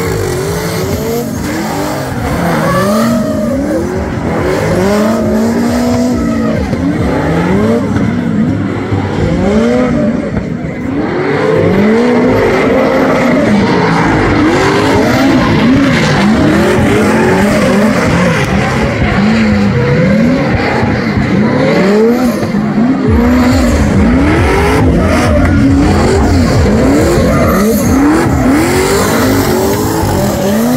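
Car engines revved hard over and over during burnouts and donuts, the pitch climbing and dropping about once a second, with tyres spinning and squealing on the tarmac.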